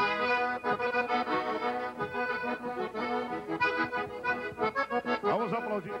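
Piano accordion playing a traditional tune, coming in suddenly at the start.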